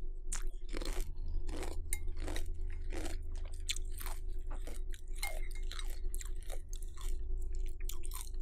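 Close-up crunching and chewing of milk-soaked chocolate cornflakes: a quick, irregular run of crisp crunches.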